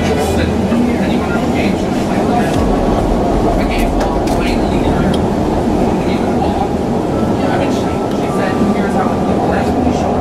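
Electric REM light-metro train running on elevated track, heard from on board: a steady rumble of wheels and running gear on the rails.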